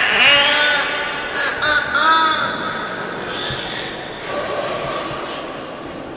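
Beluga whale making short squealing, chirping calls that bend up and down in pitch, mostly in the first two seconds, with water splashing around it.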